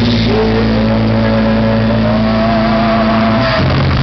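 Live rock band music with distorted sustained notes: a steady low note under a higher note that slides upward about a quarter second in and is held with a slight waver, dropping out shortly before the end.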